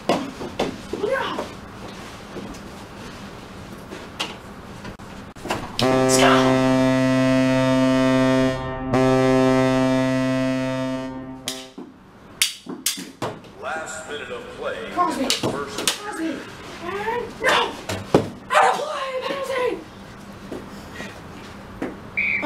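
Ice-hockey goal horn sounding for about six seconds: one low, steady tone with a brief break partway through, marking a goal.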